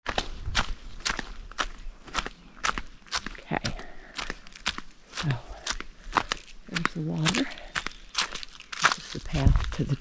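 Footsteps crunching on a path littered with dry fallen leaves, at a steady walking rhythm.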